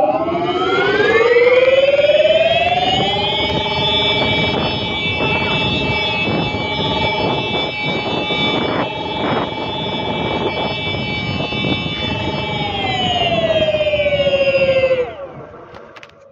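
Ola S1 Pro electric scooter accelerating hard in Hyper mode: a whine climbs in pitch with speed for about three seconds, holds steady while cruising, then falls away as the scooter slows to a stop near the end. Rough road and wind rumble with a few knocks from the track runs underneath.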